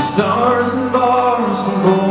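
A live band playing a song: electric guitar and drums, with male singing.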